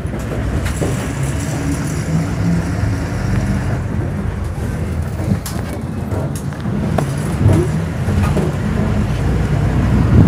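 Diesel bus engine running, heard from inside the passenger cabin as a steady low rumble, with a couple of short knocks or rattles.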